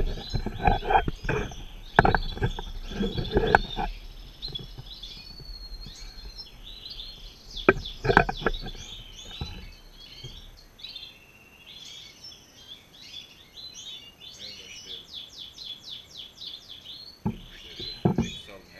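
European goldfinches in the breeding cages chirping and twittering, with a quick run of trilled notes near the end. A man laughs at the start and there are a few sharp knocks of handling about eight seconds in.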